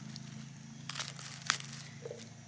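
Dry leaf litter crackling as a hand works around a mushroom at ground level, with a few small crackles about a second in and one sharp snap about a second and a half in.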